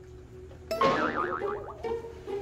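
A comic 'boing' sound effect, its pitch wobbling rapidly up and down, starting suddenly about two-thirds of a second in, over background music.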